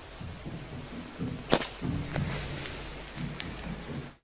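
Soft thumps and knocks from a phone camera being handled, with one sharp click about one and a half seconds in.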